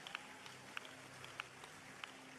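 Faint hall room tone with a low steady hum, broken by a few scattered, sharp hand claps from the congregation at irregular moments.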